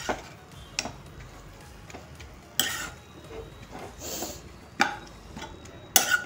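Metal spatula stirring fenugreek leaves in a metal pan: scattered scrapes and clicks of metal on the pan, a second or more apart, with a sharp click near the end.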